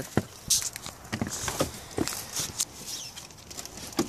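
Irregular light knocks, clicks and scrapes of hands handling a car battery and tools in a van's engine bay, as the freed old battery is taken hold of to be lifted out.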